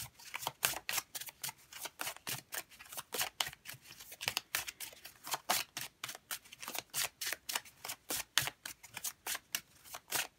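A deck of cards being shuffled by hand, packets slid from one hand to the other, making a steady run of quick, light clicks and slaps, about four or five a second.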